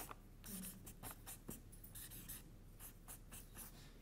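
Marker pen writing on a paper flip chart: a run of faint, short strokes as a word is written out in capital letters.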